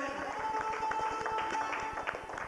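Azerbaijani ashiq music on saz with drum, keyboard and garmon: the sung line ends about a third of a second in, and the instruments carry on with a steady held note and short plucked and struck notes under it.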